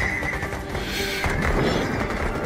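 Film trailer soundtrack: dramatic music mixed with sound effects, with a brief high-pitched sound effect about a second in.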